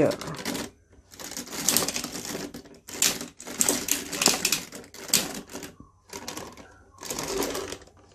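Plastic parts of a DX Tensou Sentai Goseiger combining robot toy clicking and rattling as its wings and arms are moved by hand, in several bursts of rapid clicks with short pauses between.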